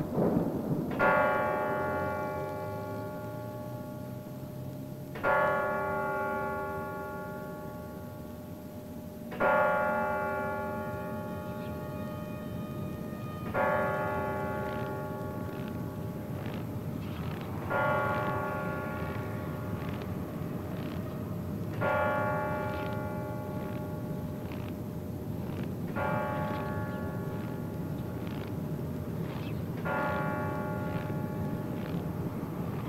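A single church bell tolling slowly, one strike about every four seconds, each ringing on and fading away. A short dull boom comes at the very start.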